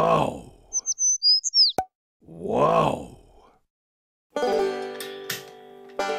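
Edited sound effects: two rising-and-falling vocal-like swoops with a few short high chirps and a click between them, then plucked country-style music starting about four and a half seconds in.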